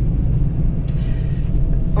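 Steady low road rumble inside the cabin of a moving road vehicle: engine and tyre noise. A faint short click comes just before a second in.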